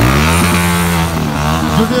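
TVS Apache motorcycle's single-cylinder engine revved up sharply, then held at high revs and wavering as the throttle is worked.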